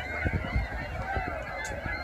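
Many overlapping bird calls from a flock of waterbirds, over a steady low rumble.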